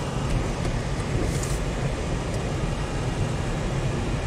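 Steady road noise of a car being driven, with engine and tyre hum heard from inside the cabin.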